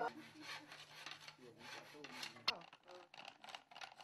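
Hand bow saw cutting a bamboo sail batten. It makes a faint run of repeated rasping strokes, with one sharp click about two and a half seconds in.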